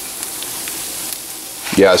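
Diced chicken frying in a nonstick pan on a stovetop burner: a steady sizzling hiss with a few faint pops.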